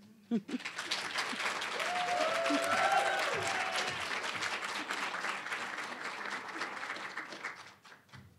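Audience applauding, a dense steady clapping that dies away just before the end. Voices call out briefly through it about two seconds in.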